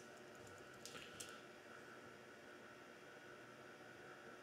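Near silence: room tone, with a few faint laptop keyboard clicks about a second in.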